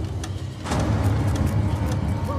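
Low rumbling drone of film-trailer sound design that swells in about two-thirds of a second in and holds, with a couple of faint clicks before it.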